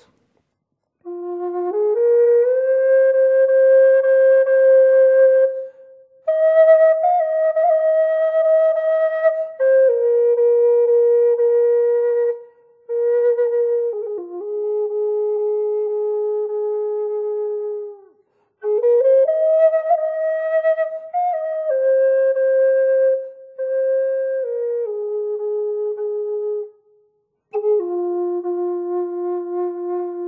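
F minor Native American flute in the Taos Pueblo style, made by Russ Wolf, playing a slow basic scale song: long held notes stepping up and down the pentatonic minor scale, in phrases with short silent breaks.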